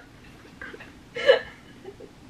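A woman laughing almost silently, with one short, louder burst of laughter just over a second in.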